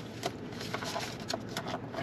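A few light clicks and faint handling noises from a takeout food container and fork being handled, over quiet car-cabin background.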